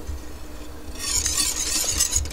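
A wire whisk stirring and scraping through melted butter, milk and sugar in a metal saucepan, getting louder from about a second in.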